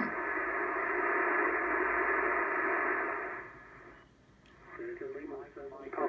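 Loudspeaker audio from a Yaesu FT-891 HF transceiver receiving on 7.192 MHz lower sideband, thin and narrow like a telephone line. For about three and a half seconds it gives a steady static-like rush, then fades almost to nothing, and a single-sideband voice comes through near the end.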